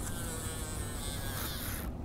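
Baitcasting reel's spool spinning as line pays out during a cast: a high buzzing whir that cuts off suddenly near the end.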